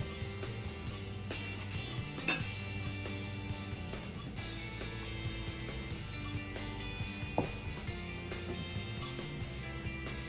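Wooden pestle pounding cooked cassava in a wooden mortar, with dull knocks, and a metal spoon clinking against a pan a little over two seconds in, all over background music with steady held notes.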